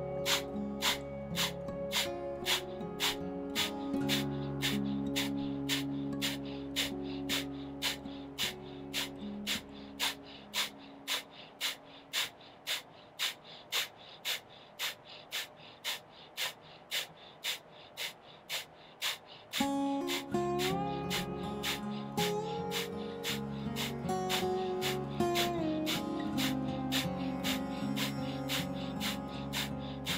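A person doing Breath of Fire: quick, sharp, forceful exhales through the nose at an even pace of about two to three a second, each followed by a passive inhale, kept up without a break. Soft background music plays under it.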